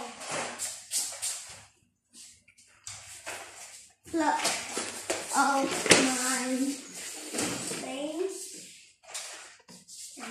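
Mostly a child's voice talking, in short bursts with pauses. A single sharp knock about six seconds in is the loudest sound.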